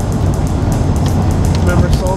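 Steady low road rumble inside a moving car's cabin, tyres on a wet road, with a few sharp ticks over it. A voice is briefly heard near the end.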